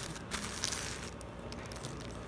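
Paper and plastic wrapping rustling and crinkling as hands handle a raffia-tied tissue-paper parcel, with small crackles in the first second, then fainter.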